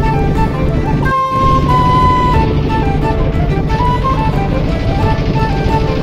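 Background music with a melody of short held notes over a dense low bed, with a brief break a little over a second in.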